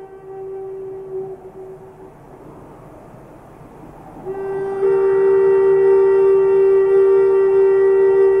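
Background meditation music of long held drone notes with a reedy, wind-instrument-like tone. One note fades away about two seconds in, and a louder held note on the same pitch swells in about four seconds in.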